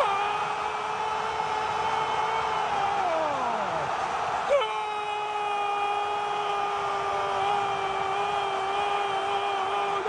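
A football commentator's drawn-out shout of "gol", held on one pitch for about three seconds before it slides down. A second long held shout starts about four and a half seconds in, over a steady crowd roar.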